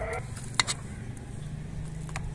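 A spoon knocking twice in quick succession against a pressure cooker while chickpeas are scooped into a bun, over a steady low hum. A held, pitched sound cuts off just after the start.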